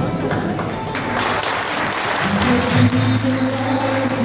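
Audience applauding and cheering over a live band playing; the applause swells about a second in, and a held low note from the band comes in a little past halfway.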